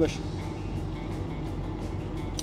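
Steady low drone of an idling diesel truck engine, even and unchanging.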